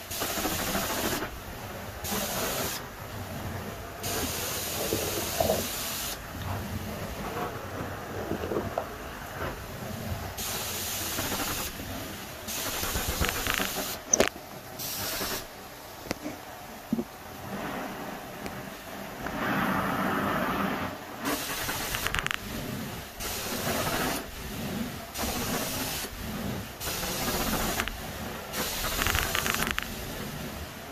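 Carpet extraction wand hissing as it sprays and sucks up water in repeated strokes, the high hiss cutting in and out every second or two. A single sharp knock about fourteen seconds in.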